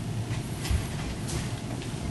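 Steady low hum of a quiet church room with a few soft paper rustles and a light thump about three quarters of a second in: Bible pages being turned at the lectern while the passage is found.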